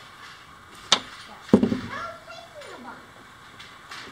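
Pieces of wood knocking on a workbench: a sharp click about a second in, then a louder knock half a second later as a glued stack of wooden propeller blades is set down. A brief wordless hum follows.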